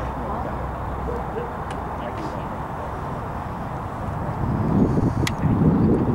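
Steady outdoor background noise with a low rumble, which grows louder and rougher about four and a half seconds in. A single sharp click comes shortly after.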